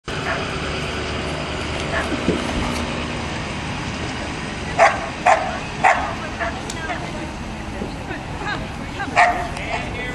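A dog barking: three sharp barks in quick succession about five seconds in and another near the end, over a steady background of outdoor chatter.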